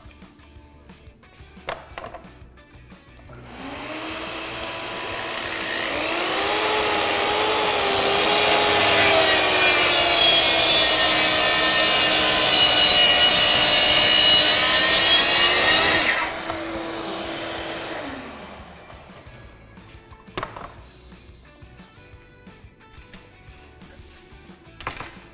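A plunge track saw's motor spins up about three seconds in, then cuts across a plywood sheet along its guide track, the motor's pitch sagging and wavering under load. The blade clears the board about sixteen seconds in; the motor runs free for a couple of seconds, then winds down with a falling tone. A few knocks follow as the saw and track are handled.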